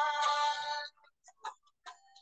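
A woman's drawn-out tonal moan or cry while weeping in prayer, held on one pitch and ending about a second in, followed by a few short faint sounds.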